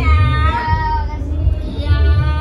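Singing with long held notes, the first sliding slightly down and fading, a second starting near the end, over music with a deep steady bass.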